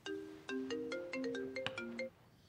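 Mobile phone ringtone: a quick, repeating melody of short, bell-like mallet notes that stops abruptly.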